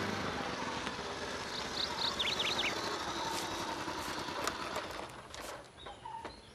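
Small step-through motorcycle running as it rides up and pulls to a stop, its sound dropping away shortly before the end. A bird chirps briefly about two seconds in.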